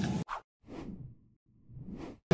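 Two whoosh transition sound effects on an animated channel logo card: a falling whoosh about half a second in, then a rising one near the end, with silence between. A brief snatch of gym room sound is cut off at the very start.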